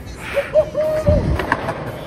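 Skateboard hitting the pavement on a missed trick: two heavy thuds about half a second apart, then a couple of sharp clacks from the board.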